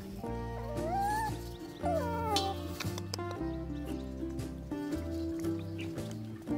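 Background music with held notes and a steady bass. Over it a puppy whines twice: a rising cry about a second in and a falling one about two seconds in.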